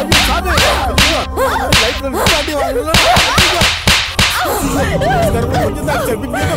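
Film soundtrack with a rapid run of short whip-like swishing smack effects, about two a second, over music full of warbling rising-and-falling tones; the swishes thin out after about four seconds.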